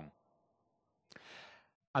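A man's short, soft intake of breath about a second in, in an otherwise almost silent pause.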